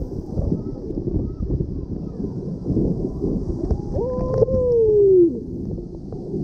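Water rushing and rumbling inside an enclosed water slide tube as a rider slides down it. A little under four seconds in, a voice gives one long shout that falls in pitch.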